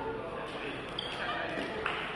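Indistinct voices echoing in a large sports hall, with the thud of a sharp impact from the play near the end.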